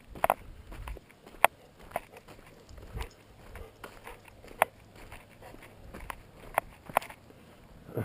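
Footsteps on a gravel road: irregular sharp crunches and clicks, about seven clear ones spread across the few seconds.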